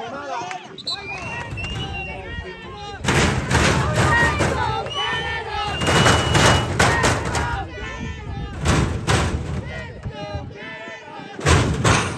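Voices of spectators and children on a football sideline. From about three seconds in, loud rumbling and thumping buffets the phone's microphone, with another short burst near the end.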